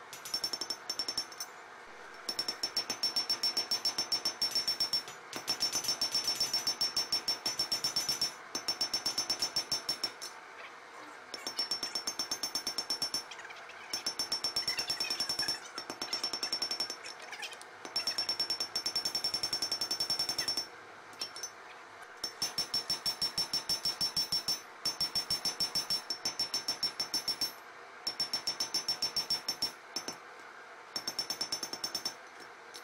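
Hand hammer striking a red-hot spring-steel knife blade on an anvil, sped up by timelapse into rapid runs of blows a few seconds long with short pauses between, the anvil giving a high ring under each run.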